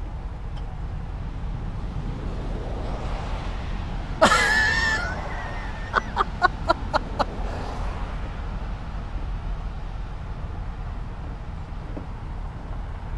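Wild turkey tom gobbling once, loudly, about four seconds in, followed a second later by a quick run of six short, sharp calls, over a steady low rumble.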